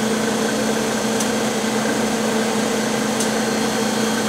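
Steady hum and rushing air noise from running lab equipment and ventilation, with a constant low tone and a couple of faint ticks.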